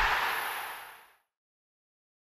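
A noisy sound effect from an animated logo sting dies away about a second in, and then there is silence.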